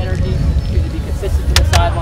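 Wind rumbling steadily on an outdoor microphone, with a few short sharp clicks and snatches of voices near the end.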